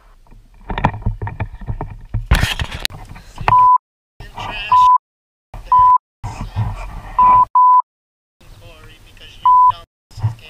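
Speech overlaid with six short, loud censor bleeps at one steady pitch, starting about three and a half seconds in, with stretches of the talk cut to dead silence between them.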